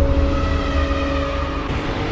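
Cinematic intro sound design: a deep, steady rumble under a few held tones, with a sharp swell reaching into the highs near the end.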